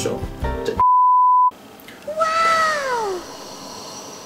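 An edited-in censor bleep, a steady pure tone lasting under a second, with all other sound cut out while it plays. About a second later comes a comic meow-like sound effect that rises slightly and then slides down in pitch, over quiet background music.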